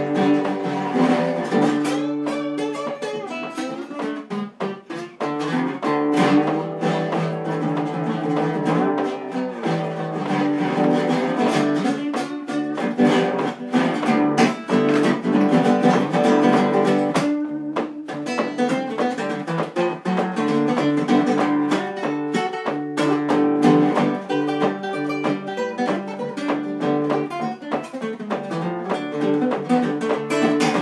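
Solo nylon-string acoustic guitar played blues-style with a raw egg used as a slide in place of a bottleneck, mixing picked single notes and strums.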